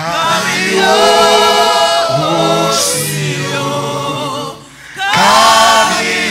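Gospel worship singing by a lead singer and backing vocalists with no instruments, in long held notes, with a brief pause about three-quarters of the way through before the voices come back in.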